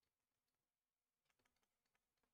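Near silence, with a few very faint clicks about one and a half seconds in from a stylus tapping on a tablet as an equation is handwritten.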